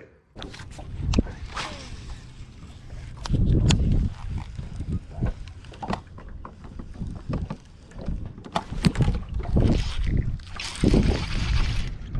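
Gusty wind buffeting the microphone as a low, uneven rumble, with scattered knocks and clicks from handling the rod and baitcasting reel.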